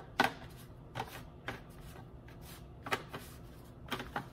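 Pieces of chocolate bar slid and shuffled around on a paper plate by hand, about five short scrapes and taps spread over a few seconds.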